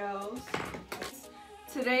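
Light clinks and knocks of small hard items being handled on a tabletop, about half a second and a second in, with a woman's voice briefly at the start and again near the end.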